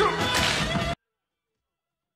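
Movie soundtrack audio: music under a sudden noisy burst about half a second in. The sound cuts off abruptly just before a second in, leaving dead silence.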